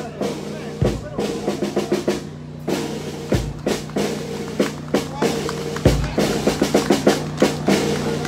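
Parade march music with rapid snare drum strikes over a steady low held note, and a heavy bass drum thump about every two and a half seconds.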